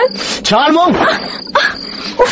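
Speech: a voice talking in a narrated drama, with one drawn-out falling vocal sound about half a second in.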